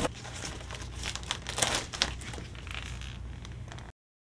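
Thin plastic sheeting of a deflated inflatable toy crinkling and rustling as it is pulled from its box and bunched up in the hands, with irregular crackles throughout. It cuts off suddenly near the end.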